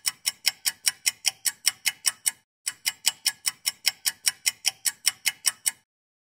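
A rapid, even ticking, about five sharp ticks a second, like a clock sound effect, in two runs broken by a short pause about two and a half seconds in and stopping just before the end.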